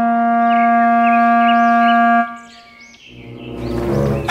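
A long held note from a horn-like wind instrument in background music, stopping about halfway through. It is followed by a quieter stretch with faint high chirps.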